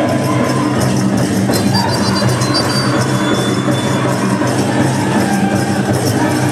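Powwow drum group playing a Grand Entry song: a big drum beaten in a steady rhythm under high sung lines, with metallic jingling from dancers' regalia.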